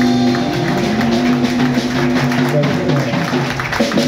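Live electric guitar, electric bass and drum kit playing an instrumental jam together, with sustained guitar notes over a moving bass line and steady drum strokes.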